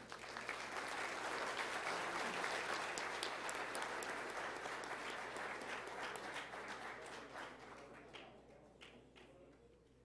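Audience applause that swells just after the start and dies away over the last few seconds into a few scattered single claps.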